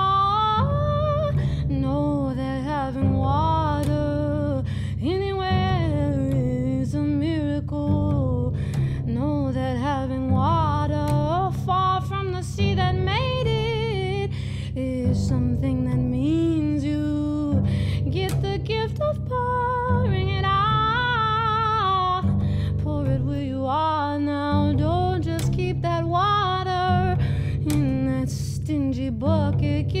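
Upright double bass plucked pizzicato, holding a steady low line under a woman singing a melody that slides up and down in pitch.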